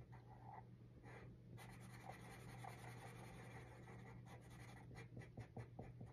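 Felt-tip marker scratching faintly on a paper card as small squares are coloured in, short strokes that come quicker and thicker in the last couple of seconds.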